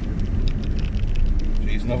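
A car's engine and tyres heard from inside the cabin: a steady low rumble while driving slowly, with scattered light clicks. A voice speaks briefly near the end.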